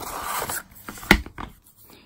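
Paper and cardboard packaging being handled: the instruction manual scraping and rustling as it slides out of its cardboard sleeve, with a single sharp tap about a second in.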